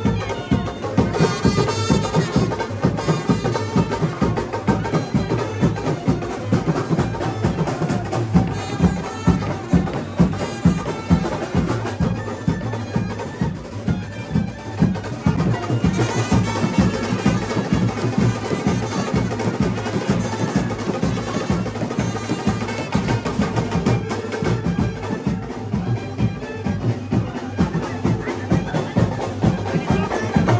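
Brass band of trumpets, saxophone and drums playing procession music, the drums keeping up a steady, driving beat without a break.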